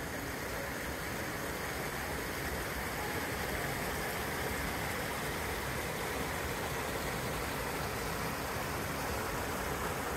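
Steady rushing of a mountain creek running over rocks, an even, unbroken sound at a constant level.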